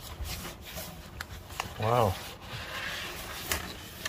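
Rustling and rubbing of a large sheet of thick vinyl guitar-skin decal and its paper packaging as it is handled, with scattered light clicks and crinkles.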